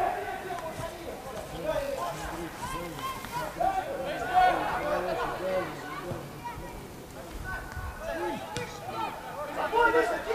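Players' voices shouting and calling to each other on an open football pitch, heard at a distance.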